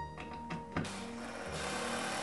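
Cordless drill-driver running steadily from a little under a second in, driving a screw into pine boards.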